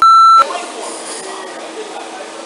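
A censor bleep: one loud pure tone of about half a second that blanks out the audio, followed by a steady background hum.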